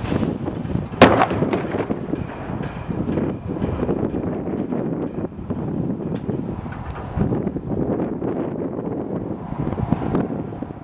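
A one-third-scale ENUN 32P spent fuel cask model with impact limiters hits the drop-test pad after a free fall: one sharp, loud bang about a second in, followed by a few smaller knocks. Steady wind noise on the microphone runs underneath.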